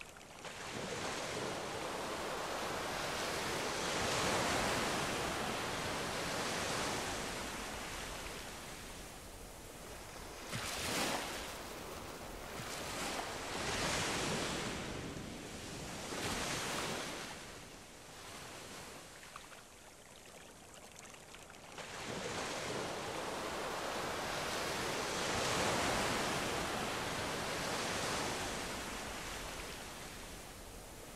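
Ocean surf washing on the shore, swelling and fading in slow surges every few seconds.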